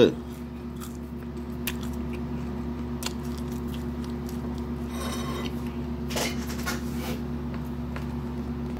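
Chewing a bite of sugar-coated cookie, heard as scattered soft clicks and short crunchy noises, with the cookie handled on a ceramic plate, over a steady low hum.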